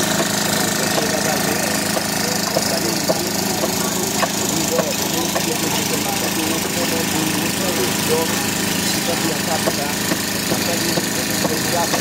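A steady engine running at a construction site, with workers' voices in the background and a few sharp knocks about four to five seconds in.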